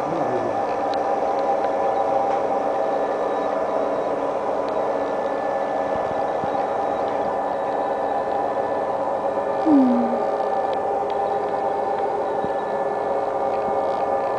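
Steady mechanical hum of running factory machinery, holding several even tones with no cutting strokes. A brief voice sound comes in just before the ten-second mark.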